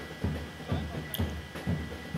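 A steady drum beat, about two beats a second, from a band playing by the race course, heard over the general noise of the passing runners.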